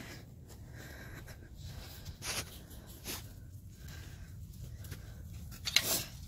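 Quiet low rumble with a handful of soft scuffs and rustles spaced through it.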